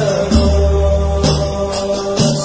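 Sholawat devotional song: a voice holding a chanted Javanese verse over music with deep sustained bass notes.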